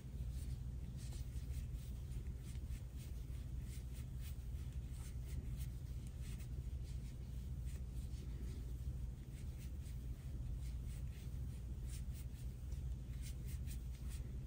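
Faint, quick scratchy rubbing of yarn being drawn over a metal crochet hook as puff stitches are worked, many small strokes, over a steady low hum.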